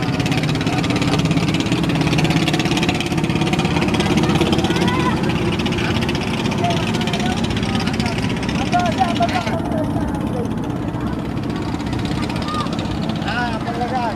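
A single-engine cargo trawler's engine running steadily as the boat passes under way, with the hiss of its bow wave that drops away suddenly about two-thirds through.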